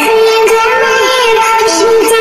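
A song with a high sung vocal, holding notes and gliding between them, over music with light regular ticks.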